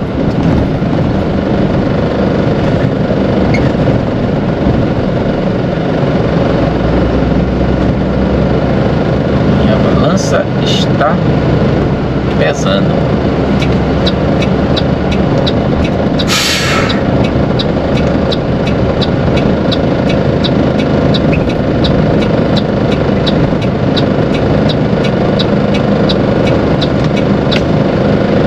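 Diesel engine of a Mercedes-Benz Atego bitruck running steadily, heard from inside the cab as it rolls slowly. A short hiss of air comes from the air brakes about halfway through. From about halfway on, the turn-signal indicator ticks at about two ticks a second.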